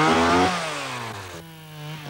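Two-stroke chainsaw running at high revs, then falling back to a steady idle about halfway through.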